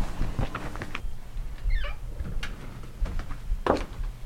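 Footsteps and shuffling movement across a room, with scattered light clicks and knocks and one brief high squeak about two seconds in.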